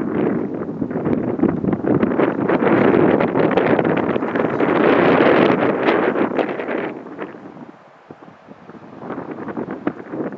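Wind buffeting the microphone, loud and gusty with a crackly texture for about seven seconds, then easing off, with a shorter gust again near the end.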